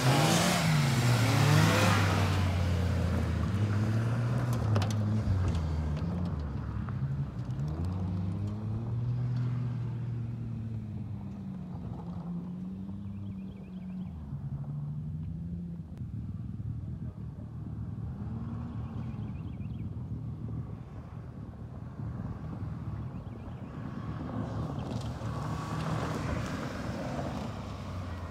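Honda Civic hatchback rally car driven through a slalom on dirt, its four-cylinder engine revving up and dropping back again and again as it weaves between the cones. It is loudest as it passes close at the start, fades as it runs to the far end of the course, and grows louder again as it comes back near the end.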